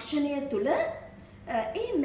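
A woman talking in a steady lecturing voice, with a short pause about a second in.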